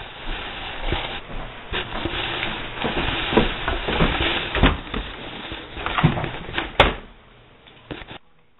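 A laptop being handled on a wooden tabletop close to the microphone: rustling with a string of knocks and bumps as it is set down and moved, and a sharp click near the end as it is opened, after which it goes much quieter.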